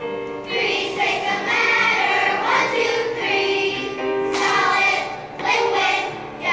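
Children's choir singing together in sustained phrases.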